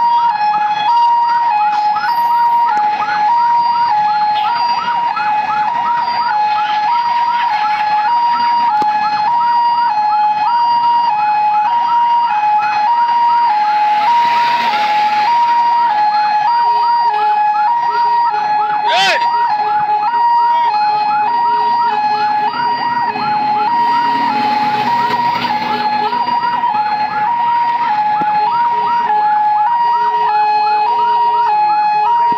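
Vehicle siren sounding a steady two-tone hi-lo wail that alternates about once a second, with a faster repeating chirp layered over it, and a brief sharp whoop about two-thirds of the way through.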